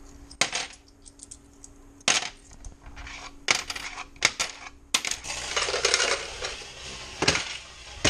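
Bus fare takings being paid in by hand: coins clink and drop in a handful of sharp separate strikes, with a stretch of paper notes rustling a few seconds in.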